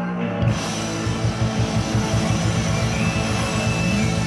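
A live rock band playing with electric guitar, bass, keyboards and drum kit. About half a second in, the drums come in with the full band and carry a steady beat.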